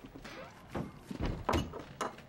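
A few dull knocks on wood, about three in the second half, the last the loudest.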